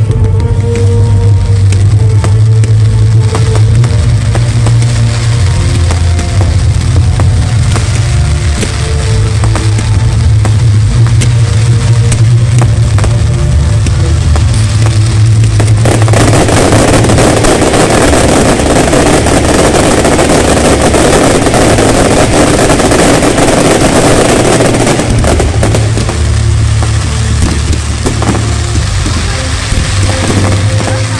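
Loud music from a sound system with fireworks going off over it, a steady run of bangs and crackles. For about ten seconds in the middle, a dense crackling rush covers the music.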